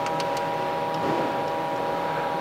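Steady machine hum with several steady high tones, and a few faint light clicks as the welder's control knob is turned.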